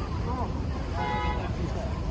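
A car horn sounds once, briefly and steady, about a second in, over the low rumble of road traffic.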